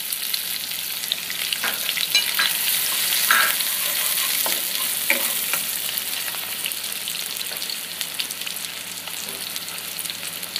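Sliced onions sizzling and crackling in hot oil in a pan, with a spatula stirring and scraping them for a few seconds partway through.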